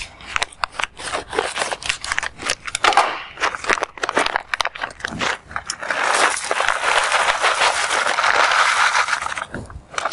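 Oak chips being tipped from a packet into a Soxhlet extractor's metal thimble: scattered crackles and rustles of handling for the first half, then a steady rush of chips pouring in for about three seconds before it stops near the end.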